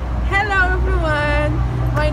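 A young woman speaking, introducing herself, over a steady low rumble in the background.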